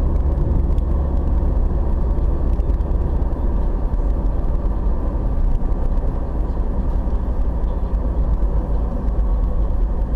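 Steady low rumble of a moving car's engine and tyres on tarmac, heard from inside the cabin.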